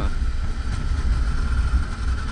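Suzuki V-Strom 650 V-twin motorcycle riding at road speed: steady low wind noise on the rider's microphone, with the engine running beneath it.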